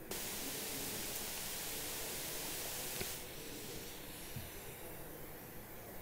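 Faint steady hiss that cuts off with a small click about three seconds in, leaving fainter background noise.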